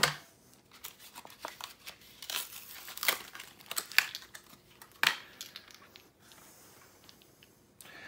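Cardboard-and-plastic blister pack of AA batteries being torn open and crinkled, with scattered sharp clicks and snaps from handling the packaging.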